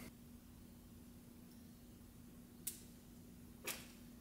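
Near silence with a faint steady hum, broken by two faint clicks about a second apart late on: fingernails picking at the protective backing of the dash cam mount's adhesive tape to peel it off.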